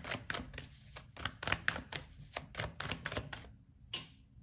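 A tarot deck being shuffled by hand: a fast, uneven run of card slaps and clicks that stops about three and a half seconds in.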